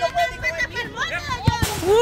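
Shouts and chatter of players and onlookers at a small-sided football game, with two quick sharp thuds about a second and a half in, as the ball is kicked.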